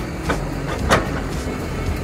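Tracked excavator's diesel engine running steadily while its bucket tears through brush and roots in the ground, with two sharp cracks, the louder one about a second in.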